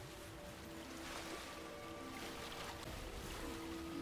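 Quiet film score of sustained notes, under a noisy, water-like whooshing swell that grows through the middle.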